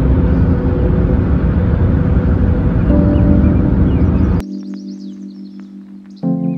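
Loud road and wind rumble from a car travelling on a highway, with music lying underneath. About four and a half seconds in it cuts off suddenly to soft background music with steady held chords and high chirps.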